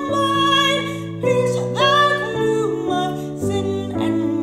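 A woman singing a slow hymn with piano accompaniment, the voice holding long notes with vibrato over sustained chords.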